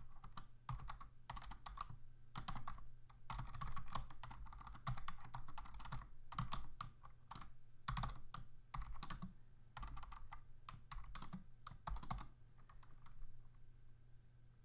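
Typing on a computer keyboard: irregular runs of keystrokes, thinning out near the end, over a faint steady low hum.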